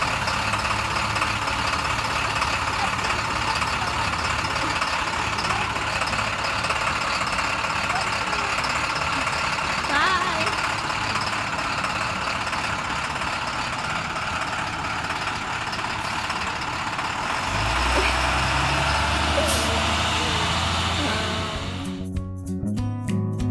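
Yellow school bus engine idling steadily at the stop with its door open. In the last few seconds the engine rumble grows louder and deeper.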